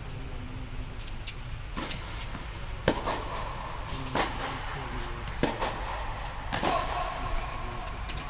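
Tennis rally: a ball struck back and forth by rackets, about five sharp hits roughly a second and a quarter apart, echoing in an air-dome indoor court.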